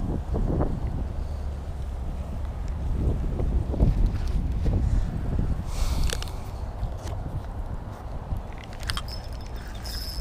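Wind buffeting the camera microphone, a steady low rumble, with a few scattered clicks and rustles around the middle and near the end.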